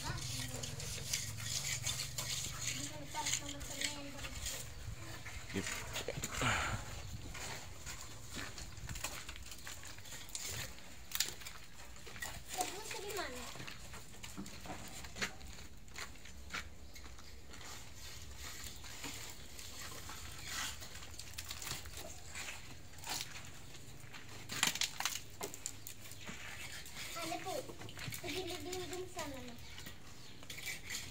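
Scattered short scrapes and taps of a mason's trowel spreading cement plaster along the top of a brick wall, with brief faint voices now and then.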